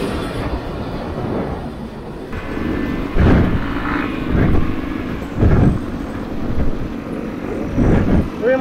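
Enduro dirt bike engine running while riding along a dirt track, mixed with wind rumble on the helmet-mounted microphone, with several loud surges of rumble.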